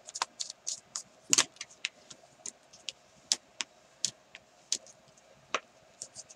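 Thick, glued patterned cardstock being folded in half and pressed between the hands: irregular sharp crackles and clicks of stiff paper, the loudest about a second and a half in.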